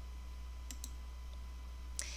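A pause with a steady low hum, and two faint short clicks close together about three-quarters of a second in, with another click near the end.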